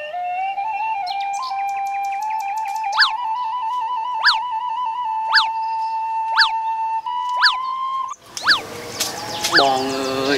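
Flute tune on a bamboo flute: one long held line that steps slowly upward in pitch. From about three seconds in, a sharp up-and-down chirp repeats roughly once a second. About eight seconds in the flute stops abruptly, leaving outdoor ambience with bird chirps.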